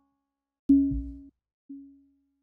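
Pilot software synthesizer playing sequenced notes with a near-pure sine tone. One short note with a low thump under it comes about two-thirds of a second in, and a fainter note at the same pitch starts near the end and fades.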